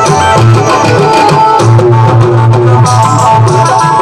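Instrumental passage of a Rajasthani devotional bhajan: a harmonium plays a sustained reedy melody over steady tabla-style drumming from an electronic drum pad, with a repeating low drum beat.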